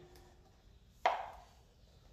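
A single sharp knock about a second in, with a short ring after it: a funnel being set into the oil filler of the motorcycle engine's crankcase.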